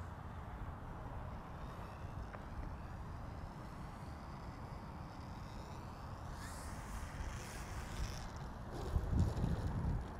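Wind rumbling on the microphone, with the faint high whine of the E-flite Air Tractor 1.5m's electric motor and propeller changing pitch as the model comes in to land. A few louder gusts of wind come near the end.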